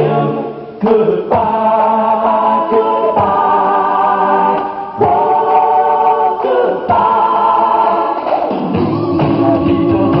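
A song sung by a group of voices together, in long held notes that change every second or two.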